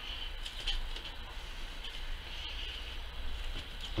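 Faint soft tearing and rustling as a hare's skin is pulled off the carcass by hand, with a few small clicks, over a steady low hum.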